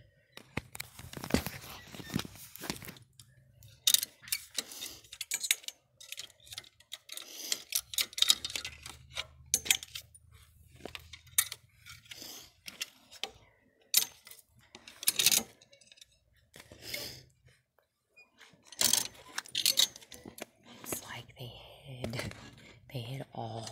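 Fuzzy blankets being rummaged and pulled around on metal store shelving, with rustling and knocking close to the phone's microphone in irregular bursts.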